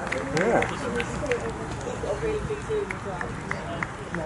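Distant men's voices of players and spectators calling and talking, with a sprinkling of faint short clicks.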